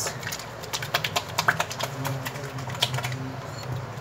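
Soapy hands being rubbed and squeezed together while lathering, making a run of small, irregular wet clicks over a steady low hum.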